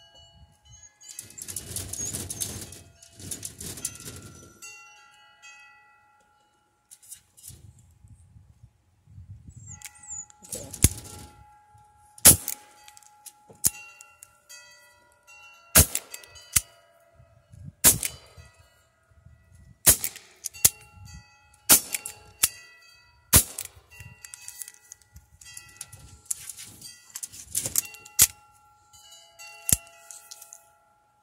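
Crosman SNR-357 CO2 air revolver firing pellets: a series of sharp shots, mostly about two seconds apart, starting about ten seconds in. Hanging metal wind chimes ring throughout.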